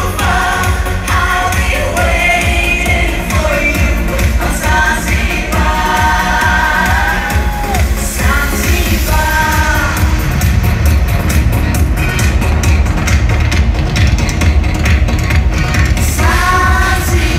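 Live 1980s Euro-disco pop song with a heavy bass beat and a female lead vocal. The singing stops about ten seconds in, leaving the band playing on with a steady beat.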